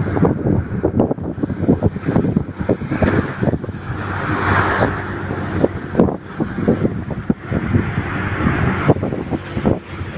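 Moving truck heard from its open cargo bed: heavy wind buffeting the microphone over the truck's running and road noise, with frequent irregular gusts and knocks.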